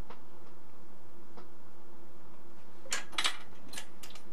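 Steady electrical hum from the freshly powered instrument bench, with a few faint clicks. About three seconds in comes a short clatter of hands taking hold of the metal chassis of a Valhalla Scientific 2724A resistance standard.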